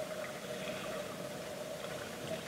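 A faint, steady hum over a low hiss.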